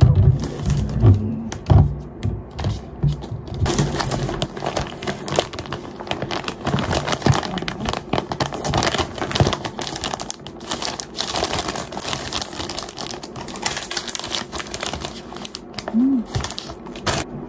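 Plastic food packaging crinkling and crackling as wrapped snacks are handled, with a few knocks in the first few seconds as plastic bottles are set down on a desk.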